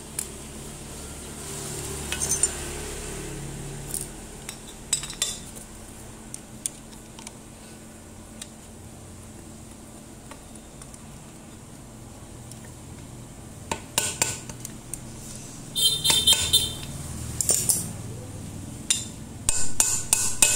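Scattered metal-on-metal clinks and knocks from the gear housing and spindle of an angle grinder's gear head being handled and set on a steel pipe. Near the end comes a denser run of sharper clinks with brief metallic ringing.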